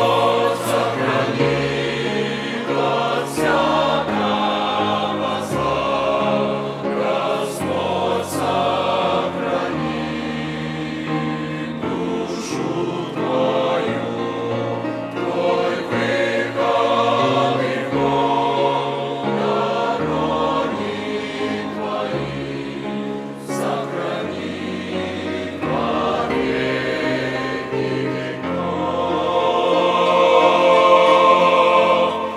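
A mixed choir of men and women singing a hymn in held chords, growing a little louder near the end.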